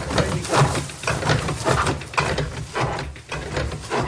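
Thatch mat-making machine clattering as its needles stitch thatching reed into a continuous mat, with the dry reed rustling as it is fed through. A dense, irregular run of rapid clicks and rustles.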